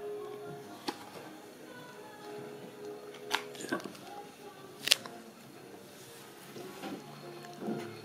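Tarot cards being handled: a few short, sharp clicks as a card is drawn from the deck and laid on the wooden table, the loudest about five seconds in, over soft background music.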